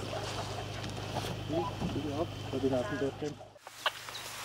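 Indistinct voices talking over a steady low hum, cutting off suddenly near the end.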